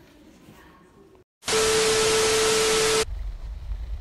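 A burst of static-like hiss with a steady mid-pitched tone through it, about a second and a half long, starting just after a brief cut to total silence and stopping abruptly: an edited-in static transition effect. Faint room tone before it and a low hum after it.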